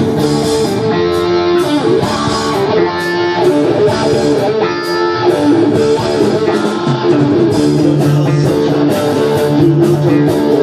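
Live rock band playing, with electric guitar lines to the fore over bass guitar and drums.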